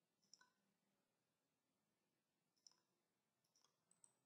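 Near silence broken by a few faint computer mouse clicks: a quick pair near the start and a few more near the end.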